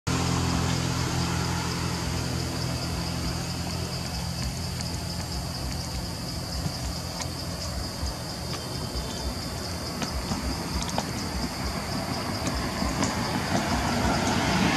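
A steady low motor hum, strongest in the first few seconds, with a steady high-pitched buzz above it and a few faint clicks.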